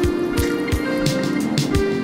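Background music with a steady beat and sustained held notes.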